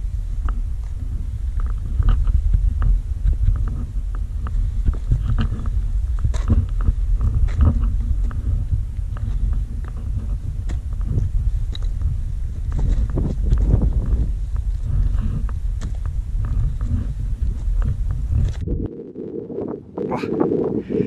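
Wind buffeting a handheld action camera's microphone in a steady low rumble, with scattered knocks and scrapes of hands and boots on granite as the climber scrambles up a steep rocky gully. The rumble stops just before the end.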